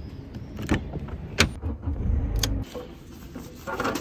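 A car door being handled: sharp latch clicks, the loudest about a second and a half in, over a low rumble. Near the end comes a short scraping as envelopes are pushed through a metal mailbox slot.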